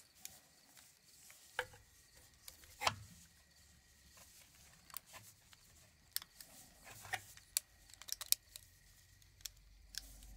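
Small sharp clicks and taps of a plastic toy eye model's parts being handled and fitted together by gloved hands, with light rubbing in between. The sharpest click comes about three seconds in, and a quick run of clicks follows around seven to eight seconds.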